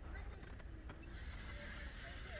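Faint, distant voices of children playing and calling out in the snow, over a low, steady rumble.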